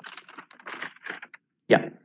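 Keystrokes on a computer keyboard: a quick, irregular run of clicks lasting a little over a second, followed by a short spoken 'yeah'.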